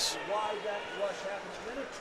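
A faint voice talking in the background over low ice-rink ambience.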